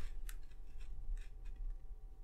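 Pen writing on a paper planner page: a series of short, faint scratching strokes.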